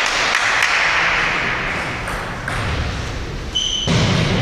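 Sports-hall ambience during table tennis play: light clicks of celluloid ping-pong balls over a steady reverberant hubbub, with a short high-pitched squeak near the end.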